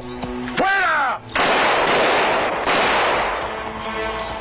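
A horse whinnies briefly, then a loud burst of gunfire starts about a second and a half in and lasts over a second before dying down to a quieter rumble.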